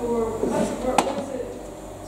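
A person speaking indistinctly in a reverberant hall, with one sharp click about a second in.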